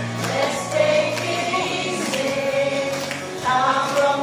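A mixed group of men and women singing a song together into microphones, amplified through stage speakers.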